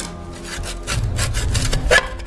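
A quick series of rasping strokes of something rubbing on wood, over a low rumble.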